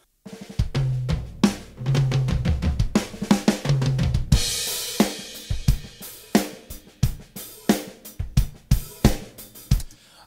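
A studio recording of an acoustic drum kit played back. It opens with low tom hits, a cymbal crash comes in about four seconds in, and then it settles into a steady beat of kick, snare and hi-hat.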